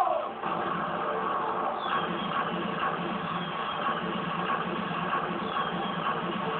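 Anime soundtrack playing from a television and picked up by a phone: a shout cut off in the first half-second, then a steady, dense mix of music and noise with a few faint falling whistles.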